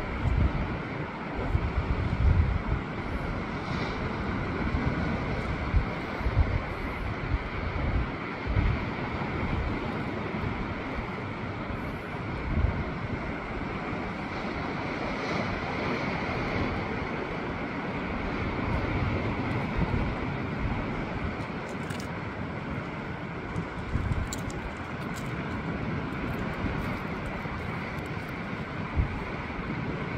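Wind buffeting the microphone in irregular gusts, with a steady rush of sea surf beneath.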